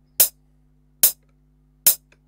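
FL Studio metronome clicking the record count-in at 72 BPM: three short clicks evenly spaced under a second apart, over a faint low hum.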